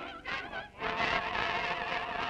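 A choir singing sustained notes with heavy vibrato, heard on a 1931 early sound-film recording. The singing drops away briefly a little before the middle, then comes back louder.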